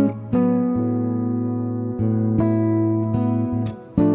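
Nylon-string Godin MIDI guitar layered with Roland guitar-synthesizer sounds, playing a slow improvised line. Plucked notes ring on long over a held low tone, with a fresh note every half second to a second. The sound thins out briefly just before a strong new chord at the end.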